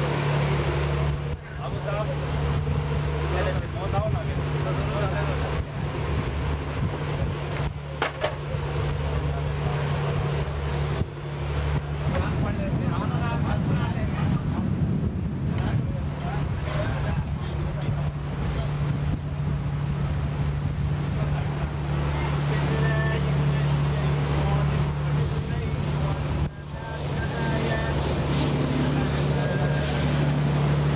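A boat's engine running with a steady low drone.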